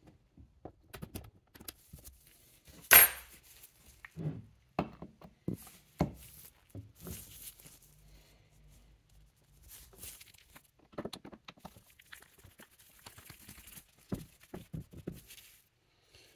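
A small pick scraping and picking packed gunk out of a slot in a wooden rifle stock beside the sling swivel: scattered light clicks and scratches, with one sharper knock about three seconds in.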